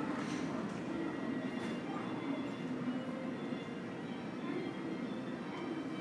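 Steady ambience of a large airport check-in hall: a low, even hum with a few faint distant clicks.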